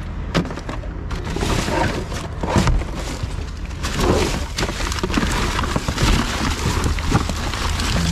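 Rummaging through rubbish in a dumpster: cardboard boxes and plastic bags rustling and crackling, with repeated thumps and clatters as items are shifted, over a steady low hum.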